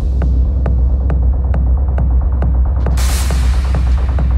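Techno music: a deep, sustained bass throb comes in at the start under a steady click a little over twice a second, with a rushing hiss that swells about three seconds in.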